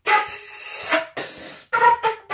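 Transverse flute played fluteboxing style. A long breathy rush of air lasts about a second, followed by a short note, another airy hiss, and a clear flute note near the end.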